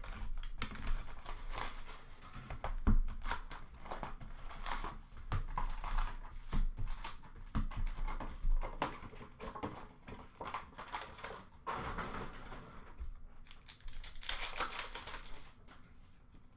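Plastic wrapping crinkling and tearing as a hockey card box is opened and its card packs are pulled out and handled, in irregular rustles with occasional knocks of cardboard on the counter. The rustling is densest near the end.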